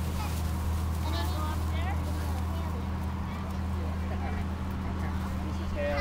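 A steady low mechanical hum runs throughout, with faint distant voices about a second in.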